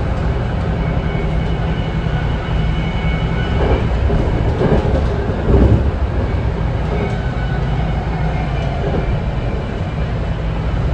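A BART Legacy Fleet rapid-transit car running on the line, heard from inside the passenger cabin: a steady low rumble of wheels on rail with a faint high whine. A few louder knocks come about four to six seconds in.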